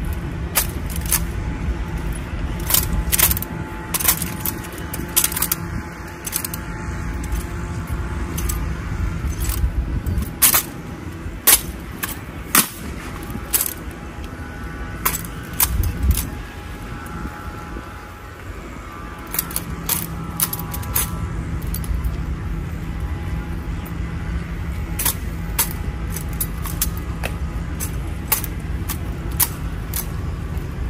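Honor guard rifle drill: a string of sharp, irregular clacks, slaps and metallic clicks as rifles are spun, caught and struck, over a steady low rumble.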